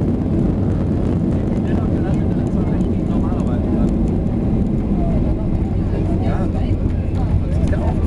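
Inside the cabin of a Boeing 737 rolling out on the runway after touchdown: a loud, steady rumble of the engines and landing gear as the airliner decelerates with its spoilers up. Indistinct voices come in under it from about two seconds in.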